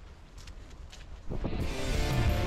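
Low wind rumble on the microphone, then background music with steady held notes comes in about a second and a quarter in and stays much louder.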